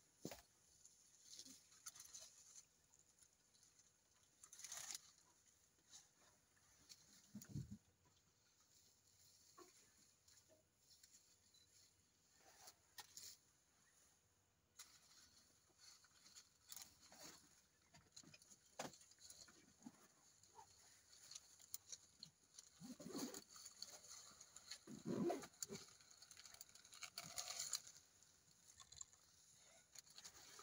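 Faint, scattered crackling and rustling of twigs and leaves as an elephant strips and feeds on a bush.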